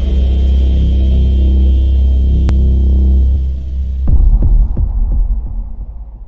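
Cinematic logo-intro sound effect: a loud, deep rumbling drone, then a sudden heavy hit about four seconds in followed by a few fading echoes.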